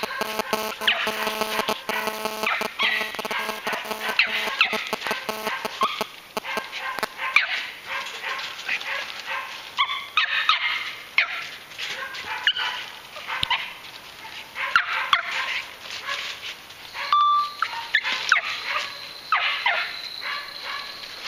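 Young squirrel-dog pup barking and yipping in many short calls, coming in quick, irregular runs.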